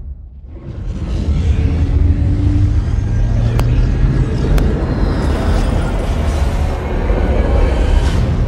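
Ominous film-trailer score over a deep, sustained low rumble that swells back in after a brief drop at the start. Two sharp clicks about a second apart come midway.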